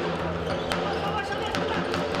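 Floorball game in a sports hall: steady crowd and hall noise, with two sharp clicks of sticks striking the plastic ball, a little under a second apart.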